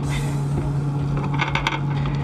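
Steady low hum of the space station's cabin ventilation fans, with a rustle at the start and a few sharp plastic clicks about one and a half seconds in as the toilet's urine funnel and hose are handled and stowed in their holder.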